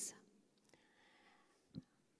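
Near silence: room tone in a pause between spoken sentences, with one brief soft sound near the end.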